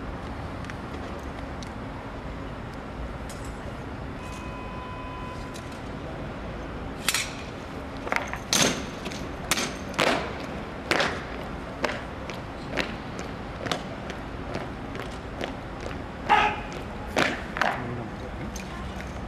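A rifle-armed honour guard's drill on stone paving: a series of sharp knocks, about one a second, starting about seven seconds in and running until near the end.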